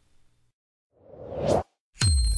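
Synthetic whoosh sound effect rising in pitch and loudness over about three-quarters of a second, then cutting off abruptly, just after the faint last notes of the music die away.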